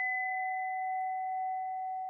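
A single struck bell tone ringing on after the strike: a clear note with one higher overtone, slowly fading.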